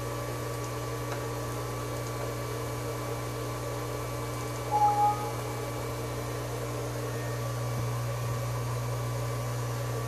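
Steady electrical hum of an idle CNC router setup and its desktop computer, before the cut starts. About halfway through, a short double beep sounds.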